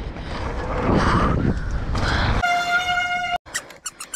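Wind and tyre rumble of a mountain bike descending a dirt trail, heard through the rider's camera. About two and a half seconds in, the riding noise gives way to a steady, buzzy beep tone. The tone lasts about a second and cuts off abruptly.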